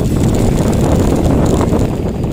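Steady wind buffeting the microphone of a camera mounted on a mountain bike as it rolls down a steep track, a loud low rumble with the faint rattle of the bike over the rough surface.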